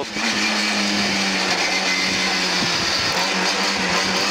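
Lada 2107 rally car's four-cylinder engine running at a steady pitch, heard from inside the cabin with road noise underneath.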